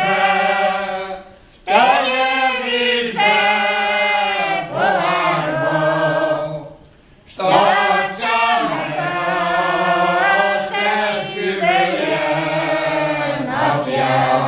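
Unaccompanied group of elderly village men and women singing a Hungarian folk song together, holding long phrases with two short breaks for breath, one about a second and a half in and one about halfway through.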